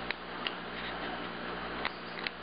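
A few faint clicks of dry fiddler crab shell being handled as the loose pincer finger is worked back into the big claw, over a low steady hum.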